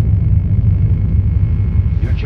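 A loud, steady low rumble with a faint hiss above it, a drone within the track.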